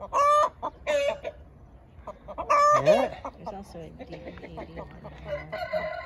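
Roosters crowing, three loud calls in the first three seconds, followed by softer chicken clucking.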